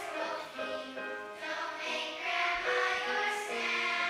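A group of young children singing together as a choir in a school musical number, holding notes that change pitch every half second or so.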